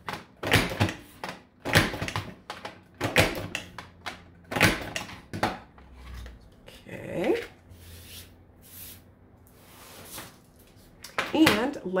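Creative Memories Border Maker punch cartridge being pressed down again and again on its plastic guide, cutting a border into cardstock: a run of sharp plastic clicks and clunks through the first half. Then paper rustles and slides as the cut strip is pulled off the tool.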